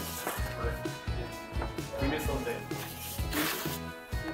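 Background music with brief rustles of plastic wrapping as a wrapped laptop is lifted out of a cardboard box; the loudest rustle comes a little over three seconds in.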